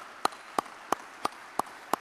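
Applause from a small seated audience. One person's claps stand out, sharp and evenly spaced at about three a second, over softer clapping from the rest.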